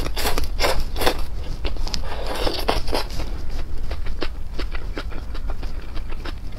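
Close-miked eating sounds: spicy stir-fried instant noodles (buldak) being slurped in and chewed, with many short wet clicks and smacks of the mouth.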